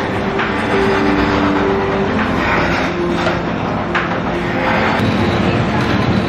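Background music with held melody notes, played over a steady, dense mechanical rumble and clatter.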